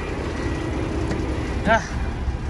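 Semi truck's diesel engine idling with a steady low rumble.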